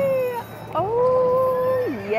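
A woman's long, high, drawn-out excited "woo" calls, twice: one trailing off about half a second in, and a second, longer one that rises, holds and drops away near the end.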